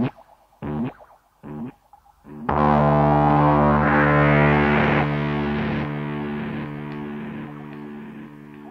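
Industrial noise music: a heavily distorted, effects-processed electric instrument plays three short stabs, then a long sustained distorted note that holds loud for a few seconds and slowly fades.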